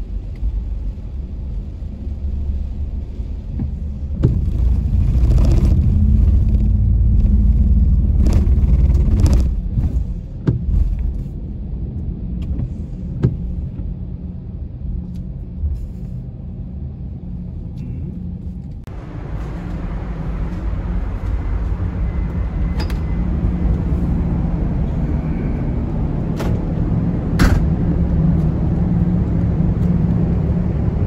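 Low rumble of a Nissan X-Trail driving up a steel ferry ramp and onto the car deck, with scattered knocks. About two-thirds through it changes abruptly to steady wind and ship noise on an open deck.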